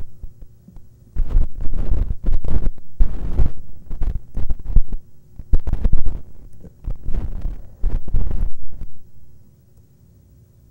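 Microphone handling noise: loud, irregular low thumps and rumbling from about a second in, dying away near the end.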